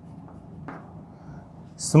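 Chalk writing on a blackboard: faint scratching strokes, with one sharper scratch about two-thirds of a second in. A man's voice starts right at the end.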